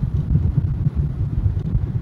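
Low road and engine rumble inside the cab of a moving truck, uneven, with wind buffeting the microphone.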